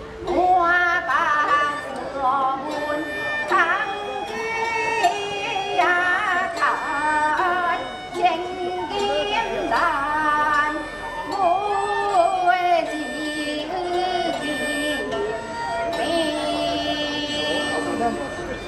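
Nanyin (Southern music) performance: a woman singing slow, heavily ornamented melodic lines over a plucked nanyin pipa and an end-blown dongxiao bamboo flute, with occasional strokes of the wooden paiban clappers.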